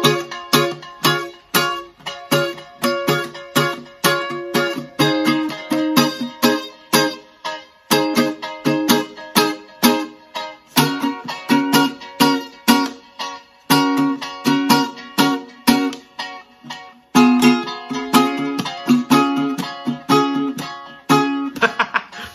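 Lava U carbon-composite tenor ukulele strummed in a steady rhythm, about two strums a second, with the chord changing every few seconds. Its built-in echo effect is set to repeat in time with the strumming.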